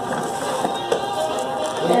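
Tissue paper and a foil gift bag rustling and crinkling as a present is pulled out of the bag, with music playing in the background.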